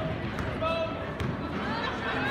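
Basketball game sounds in a gym: a ball bouncing on the hardwood floor and short sneaker squeaks, over the voices of spectators.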